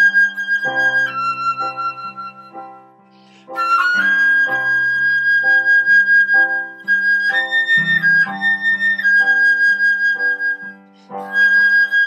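Concert flute playing a slow melody in long held notes over a recorded digital piano accompaniment of repeated chords. The music drops away briefly about three seconds in and again near the end.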